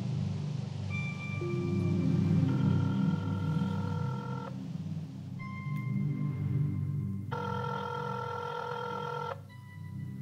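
Ringing tone of an outgoing phone call: two rings about two seconds long, around two and a half and seven seconds in, with softer single tones before each, over a low droning music bed.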